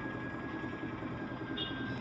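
Faint steady background noise in a pause between speech, with a thin, high, steady whine running through it.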